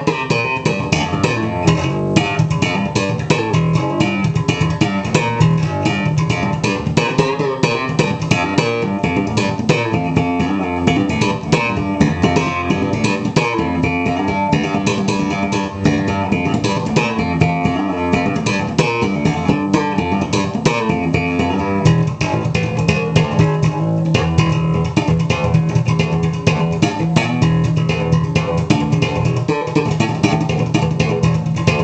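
Sunburst Precision-style electric bass played solo with slap-and-pop technique and hammer-ons: a fast, unbroken run of percussive notes with sharp, frequent string clicks.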